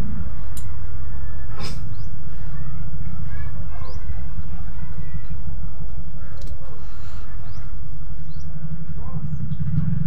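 Loud, steady low rumble on the microphone, with a few short, faint high chirps scattered through it.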